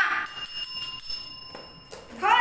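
A bell-like chime: a single ringing tone with several high overtones, fading for about a second and a half and then stopping.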